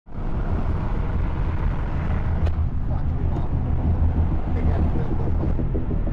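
Car driving, heard from inside the cabin: a steady low engine and road rumble, with a few sharp clicks around the middle.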